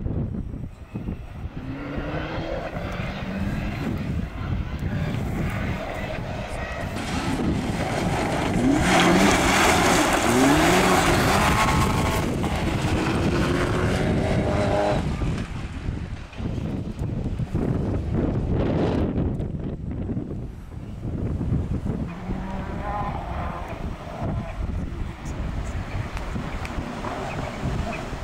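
Rally car engine revving hard through the gears, its pitch climbing and dropping back again and again with each gear change, loudest about nine to twelve seconds in, then fading and building again as another car approaches near the end.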